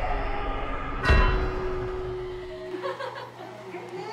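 Edited-in sound effect: a deep booming hit about a second in, followed by one held tone that cuts off before three seconds in.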